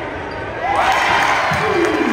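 Basketball game in a gym: spectators' voices rise in shouts about a second in as a shot comes down at the rim. A basketball thumps on the hardwood, and one long shout falls in pitch near the end.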